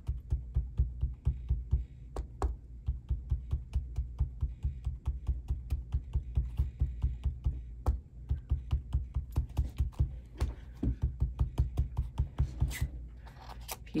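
Small foam ink dauber pounced rapidly onto a stencil laid over shrink plastic on a table: a quick run of dull taps, about five a second, with short breaks about eight seconds in and near the end while the dauber is re-inked.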